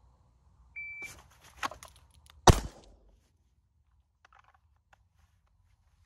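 An electronic shot timer gives one short high beep. Clothing rustles as a revolver is drawn from deep concealment, and about 1.7 seconds after the beep a single .22 LR shot is fired from a Ruger LCR snub-nose revolver, the loudest sound, cutting off quickly.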